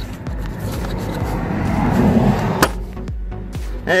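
Background music with a steady beat, over rustling handling noise and one sharp click a little past halfway, as a plastic retaining clip on the Smart Fortwo's air-intake boot is worked loose.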